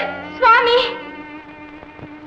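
A woman's voice gives a short cry about half a second in, over held notes of background film music that fade toward the end.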